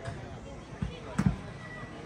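Faint talk from people on an open pitch, with dull low thumps a little before and just after a second in; the second, double thump is the loudest sound.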